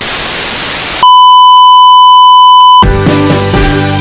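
Television static hiss for about a second, then a loud, steady electronic beep at one pitch for nearly two seconds. The beep cuts off suddenly and music starts.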